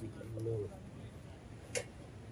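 A dove cooing softly, with one sharp tap near the end.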